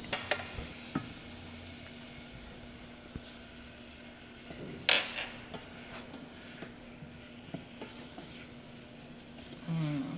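Wooden spoon stirring apple pieces in a stainless steel saucepan, with scattered knocks and scrapes against the pot; the loudest knock comes about five seconds in. A faint sizzle and a steady low hum lie underneath.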